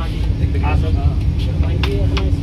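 Steady low rumble of a Vande Bharat Express electric train running, heard from inside the passenger coach, with a faint constant hum. Brief snatches of passenger voices and a couple of light clicks from snack trays being handed out sit over it.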